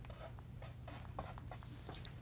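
Chalk writing on a blackboard: faint, short, irregular scratches and taps of the chalk strokes.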